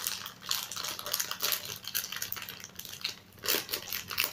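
Plastic snack packaging crinkling and rustling in the hands as a bag is handled and opened, with a run of irregular crackles.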